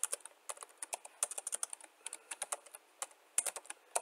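Computer keyboard typing: uneven runs of quick key clicks, with a short pause a little before the end.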